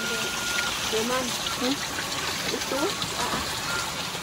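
Steady rush of running water under soft children's voices; a thin steady tone sounds for the first part of a second.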